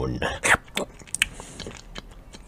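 A man's mouth noises: a brief voiced sound, then several sharp lip-smacking clicks with short breaths between them.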